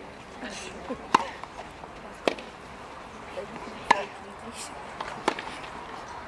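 Tennis rally: a racket strikes the ball four times, sharp cracks a second or so apart, over a steady background murmur.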